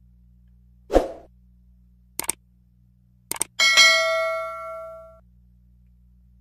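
A dull thump, then two quick pairs of sharp clicks, then a bright metallic ding that rings on and fades away over about a second and a half.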